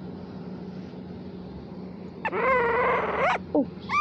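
A tiny puppy whining: one long, wavering cry about two seconds in, then a brief squeak just before the end.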